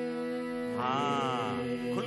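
Harmonium holding a steady drone, joined a little under a second in by a man's voice singing one long note that bends up and then falls away, in the manner of an Indian classical vocal exercise.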